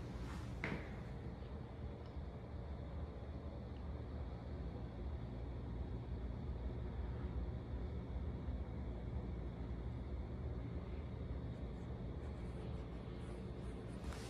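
Room tone in a small empty room: a steady low rumble, with a soft knock about half a second in.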